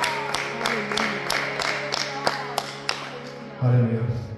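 Harmonium holding a steady chord while hands clap in an even rhythm, about three claps a second. A man's voice comes in near the end.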